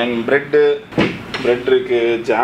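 A person talking, with one sharp knock about a second in.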